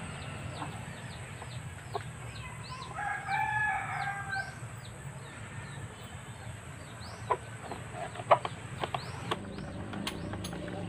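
A rooster crows once, starting about three seconds in and lasting about a second and a half, over a steady run of high, quick chirps. Sharp clicks and knocks come from handling the motorcycle's plastic fairing panels, the loudest one near the end.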